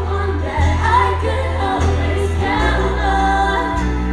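Live pop performance by a female vocal group: a lead voice with vocal harmonies over acoustic guitar and sustained bass notes that change every second or so.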